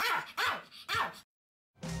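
A Pomeranian barking three times in quick succession, each bark short and sharp, then cut off abruptly; music begins near the end.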